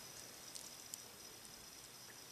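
Near silence: faint room hiss with a steady high whine and a few tiny, faint ticks.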